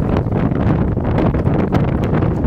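Strong sandstorm wind buffeting a phone's microphone: a loud, unsteady rumble that rises and falls with the gusts.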